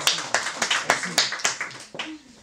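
A small audience clapping, dying away near the end, with a few voices mixed in.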